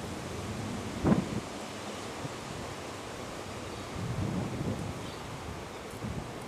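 Wind rumbling on the camera microphone, a steady hiss with low gusts about a second in and again around four seconds in.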